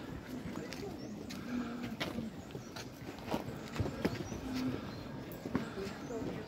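Footsteps of a crowd climbing stone steps: irregular taps and scuffs, under faint chatter of people nearby.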